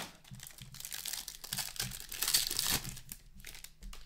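Foil wrapper of a hockey card pack crinkling and tearing as it is opened and the cards are pulled out, loudest a little past the middle.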